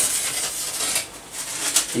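Rustling, rubbing noise with a few light clicks.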